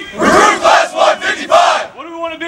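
A large class of firefighter recruits shouting a chant together in unison, in several loud, short bursts of many voices at once.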